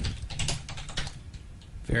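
Computer keyboard being typed on: a quick, irregular run of key clicks that thins out after about a second.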